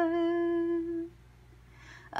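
A woman's voice holding one long, steady hummed note in a light-language chant. The note stops about a second in, leaving faint room tone.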